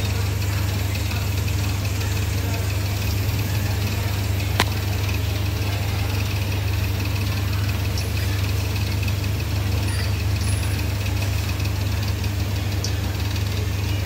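A steady low mechanical hum, as of a motor or fan running, with one sharp click about four and a half seconds in.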